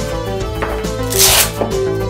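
Background music, with a short rasp about a second in as the hook-and-loop (Velcro) closure on a Cordura 1000D shotgun-shell pouch is pulled apart by hand.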